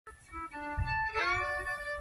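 Fiddle playing a tune in held notes that change every half second or so, some sliding into pitch, with guitar accompaniment underneath.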